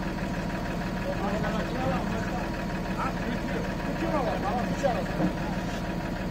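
Truck diesel engine idling steadily while the truck's loader crane unloads pallets of roof tiles, with faint voices in the background.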